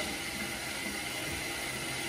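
Steady low hiss of background room noise, with no distinct sound standing out.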